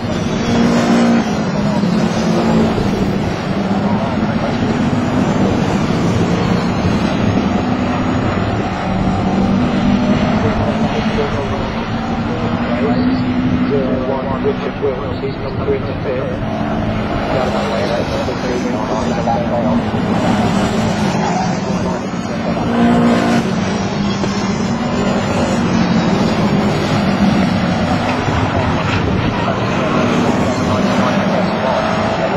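A pack of saloon race cars running through the corners, several engines revving at once, their pitch rising and falling as they brake, turn and accelerate past.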